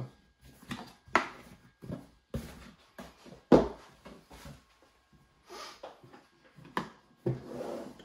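Handling of a hard plastic ammo crate being lifted out of a cardboard box and set down on a table: a string of hollow plastic knocks, scrapes and cardboard rustles, with the loudest knock about three and a half seconds in.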